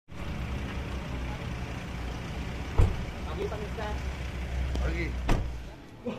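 A car engine idling with a low, steady rumble. Two sharp thumps come about three and five seconds in, the first the loudest. Voices talk faintly.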